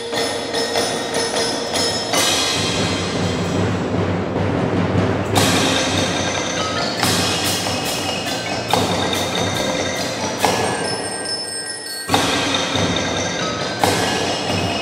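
Youth percussion ensemble playing: marimbas, xylophones and vibraphones over drums and cymbals. Sustained mallet notes are punctuated by loud accented ensemble hits every two to three seconds, each ringing on in the hall.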